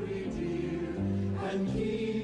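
Music with a choir singing held chords that change every second or so.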